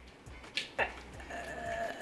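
A short, steady, high-pitched whine held for about half a second near the end, after a brief falling sweep about half a second in.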